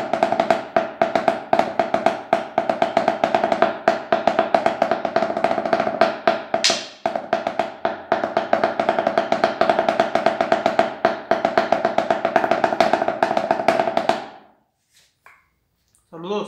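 Snare drum (tarola) under a towel, played with wooden drumsticks in a fast, dense run of strokes with a ringing drum pitch. The strokes break off briefly about halfway through and stop near the end.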